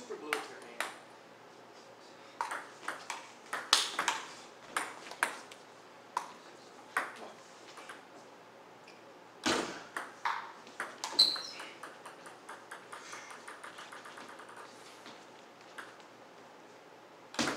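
Table tennis ball clicking off paddles and the table in short rallies, with irregular sharp ticks and pauses between points. Past the middle, a ball bouncing on the wooden floor in quickening, fading bounces as it comes to rest.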